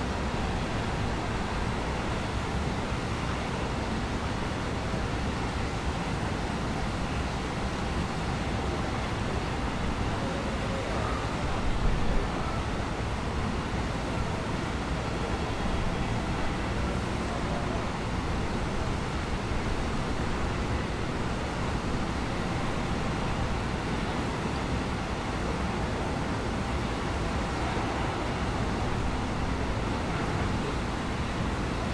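Steady outdoor noise with a low rumble, like wind on the microphone, and a brief louder bump about twelve seconds in.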